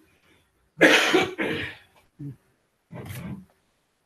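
A person coughing and clearing their throat: a loud double cough about a second in, a short one just after, and another cough near the end.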